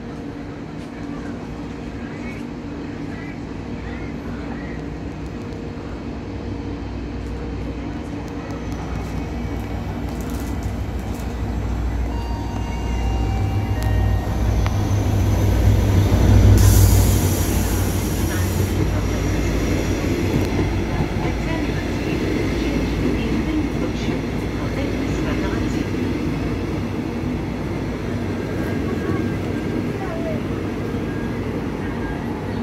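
Locomotive-hauled double-deck passenger train going past a station platform: a low rumble builds to its loudest as the locomotive goes by, with a short hiss at the peak, then the steady clatter and rumble of the coaches' wheels on the rails.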